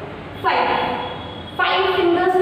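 A horn sounding in long steady blasts: one begins about half a second in and lasts about a second, and a second blast starts near the end.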